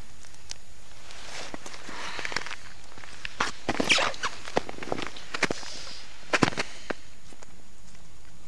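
Snow and ice crunching, with jacket rustling, as an ice angler kneeling on snow moves and reaches down into his fishing hole; a run of irregular sharp crunches and clicks, loudest around the middle and again later on.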